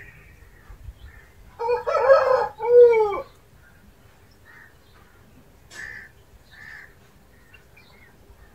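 A rooster crowing once, about a second and a half long, ending on a falling note. Faint short chirps come before and after it.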